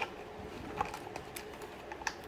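A few light taps and scrapes as the parts of a hand-built cardboard model are pushed and folded into place by hand.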